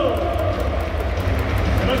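Stadium PA announcer's voice ending a name with a falling pitch and echoing away through the domed ballpark, over a steady low rumble of the hall. The announcer starts the next line near the end.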